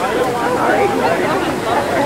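Several people chatting at once in a small group, their voices overlapping into unclear talk.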